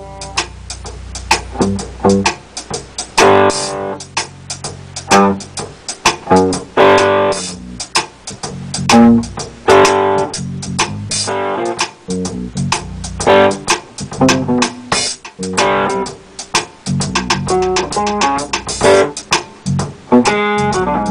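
Free jazz improvisation: electric guitar playing short, jagged atonal phrases and stabs, with electric bass and drums.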